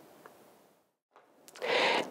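Near silence: faint room hiss that drops to dead silence about halfway through, then a short breath drawn in near the end, just before speech resumes.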